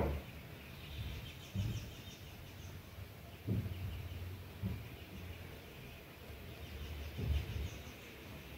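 Birds chirping faintly in quick repeated series, over intermittent low rumbles and thumps.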